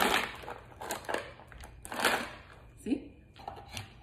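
Stiff plastic tub of frozen peeled garlic cloves being handled and opened: a few short crinkling rustles of the plastic, about a second apart.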